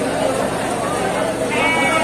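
A goat bleats once, briefly, about a second and a half in, over steady crowd chatter.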